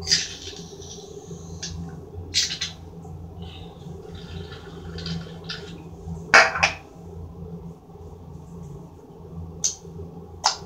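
Hands pressing and poking glitter slime topped with shaving cream: several short, sharp wet squishes, the loudest about six seconds in, over a steady low hum.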